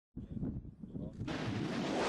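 Cruise missile launch: a low rumble, then about a second in a sudden loud rushing roar from the missile's rocket motor that holds steady.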